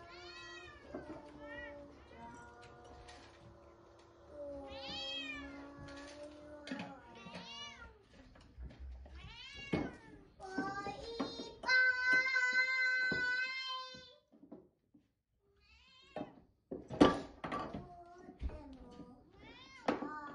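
Munchkin cats meowing through a squabble: several short rising-and-falling meows, then one long drawn-out yowl about twelve seconds in. A few sharp knocks follow near the end.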